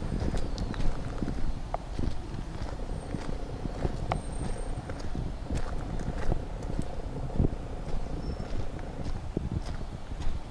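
Loose gravel crunching under the tyres of a Nissan Bluebird Sylphy sedan rolling slowly, with many irregular sharp clicks of stones popping.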